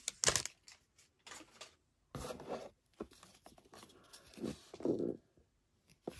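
Foil wrapper of a Topps baseball card pack tearing open, loudest right at the start, followed by a few short, softer rustles of the wrapper and cards being handled.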